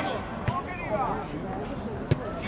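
Football players shouting on the pitch, with a single thud of a ball being kicked about half a second in.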